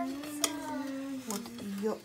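A person humming one long held note that wavers slightly, with a single sharp click about half a second in as the metal spatula is worked under the pizza on its plate.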